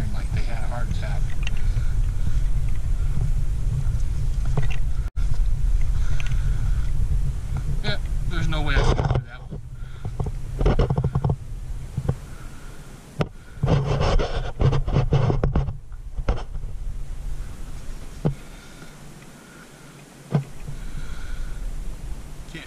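Wind buffeting a body-worn camera's microphone as a low rumble through the first nine seconds or so, then easing. In the quieter second half there are several short, louder bursts of rustling or crunching.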